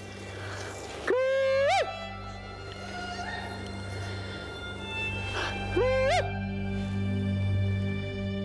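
A man's cooee call through cupped hands: a long low note that rises sharply at its end, about a second in. A second, shorter cooee of the same shape follows near six seconds, over soft background music.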